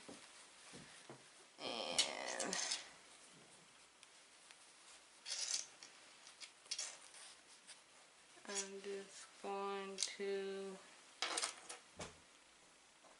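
Soft rustling and scraping of hands working yarn through a crochet hat, with a few sharp little clicks. Near the end come three short murmured voice sounds.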